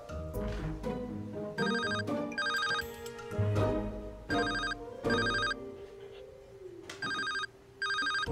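Mobile phone ringtone: an electronic ring sounding in pairs, three pairs about two and a half seconds apart, as an incoming call arrives. A sustained background music score plays underneath.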